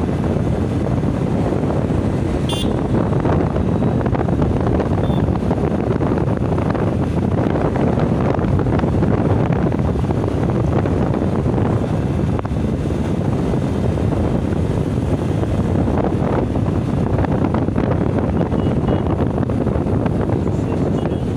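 Wind buffeting the microphone over the steady rumble of a vehicle moving along the road, with one brief high blip about two and a half seconds in.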